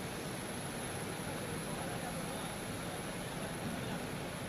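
Steady airport apron noise: the constant hum and high whine of a parked airliner and ground equipment, with indistinct voices in the background.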